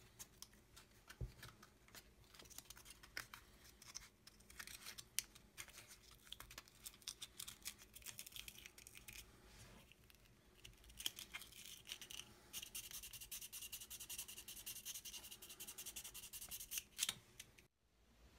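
Fine grey sandpaper rubbing along a thin wooden moulding strip, smoothing down wood fibres raised after soaking and drying. Faint, scratchy, irregular strokes that quicken into a steady rapid rub about twelve seconds in.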